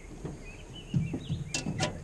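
Dull knocks and two sharp clicks from gear being handled inside an aluminum jon boat, starting about a second in, with faint bird chirps behind.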